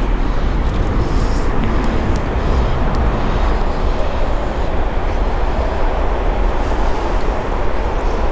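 Wind buffeting the microphone: a steady, deep rumble with hiss over it.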